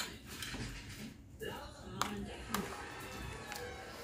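A serving utensil clinking against plates and dishes a few times as food is scooped, over low table chatter.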